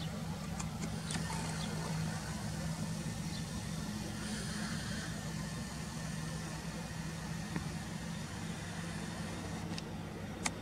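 A steady low mechanical hum, like an engine idling, with a few faint clicks.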